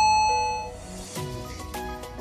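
A single bright chime rings out and fades over about half a second, marking the start of a new timed stretch interval, over background music that carries on with a beat.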